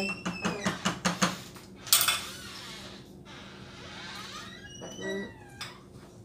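A silicone spatula tapping and scraping powdered starch off a measuring spoon into a saucepan. There is a quick run of light taps in the first second, a scrape about two seconds in that trails off into soft stirring, and a brief high, falling vocal sound near the end.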